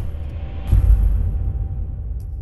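Logo sting music: a deep rumble that swells into a boom a little under a second in, with a thin high ringing tone over it.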